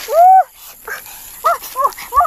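A series of short, high-pitched whimpering cries, each rising and falling in pitch: one loud cry at the start, then three shorter ones in the second half.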